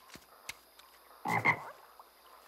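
A frog croaking twice in quick succession, a little over a second in, after a few faint clicks.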